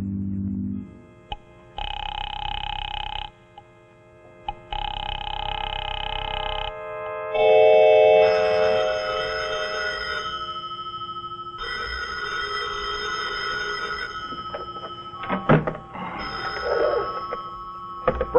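Rotary desk telephone's bell ringing twice, each ring about a second and a half long, followed by a music cue that comes in loud and sustains. Near the end, a few sharp clicks as the receiver is picked up.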